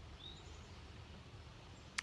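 Quiet outdoor background: a faint steady low hum with a single short, faint bird chirp shortly after the start.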